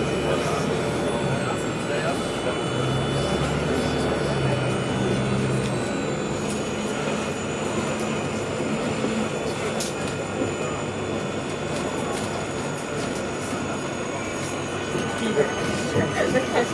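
Cabin noise on the upper deck of a Bustech CDi double-decker bus under way: steady engine and road noise, with a low engine note that climbs a few seconds in as the bus picks up speed, and a thin high whine above it.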